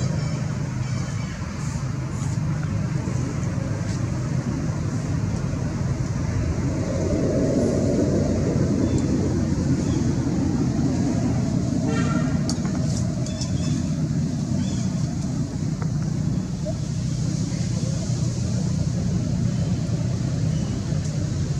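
A steady low rumble of motor traffic, with faint voices mixed in. A short high call stands out about twelve seconds in.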